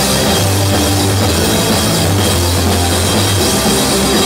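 Live rock band playing loud, with electric guitar and drum kit over long held low bass notes.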